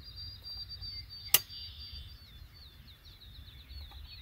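A single sharp metallic click about a third of the way in from a break-action double-barrel shotgun being handled, over a bird's faint high trilling.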